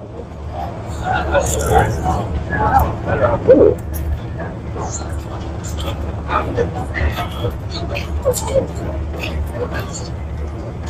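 Close-up chewing of a bite of fried egg roll, with a run of short crackly crunches in the second half. Background voices and a steady low rumble run underneath.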